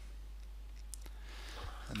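A single faint computer-mouse click about a second in, over a steady low hum.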